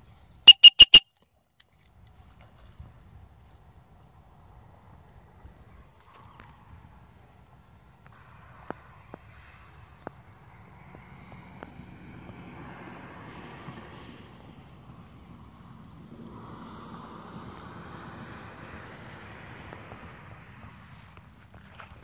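Three quick, loud, high-pitched blasts on a retriever-training whistle, the recall signal to a dog swimming in the pond. After it there is only faint low background noise with a few small clicks.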